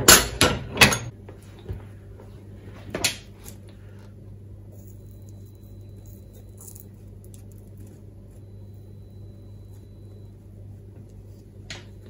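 Coax cable and hand tools being handled on a wooden workbench: a quick run of sharp knocks and clatters in the first second and one more knock about three seconds in. Then a steady low hum, with a single click near the end.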